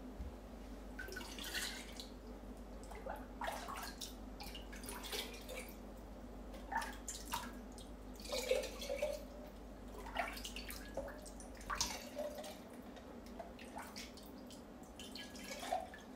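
Water dripping and splashing off a ladle as eggs are scooped one at a time from a bowl of water and lowered into a glass jar, in irregular short bursts. Light knocks come from the ladle and eggs against the glass.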